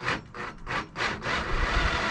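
Cordless drill driving a self-drilling screw through a wooden bed slat into a steel IKEA Skorva mid beam. A few short bursts as the screw bites, then the drill runs steadily from about a second and a half in.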